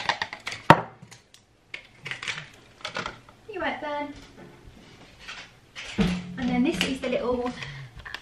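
Clinks, knocks and rustles of a glass coffee cup and a foil sachet being handled and emptied, with a sharp knock a little under a second in and scattered knocks after. Voice-like sounds come in about halfway through and again near the end.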